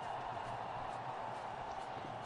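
Steady cricket-ground ambience from the match broadcast: an even hiss-like murmur with no distinct hits, shouts or applause.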